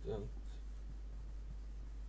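Craft paper being handled and rubbed down by hand: faint scratchy rubbing with a few light ticks, over a steady low hum.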